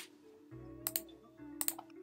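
Soft background music with a few quick computer keyboard clicks in the middle.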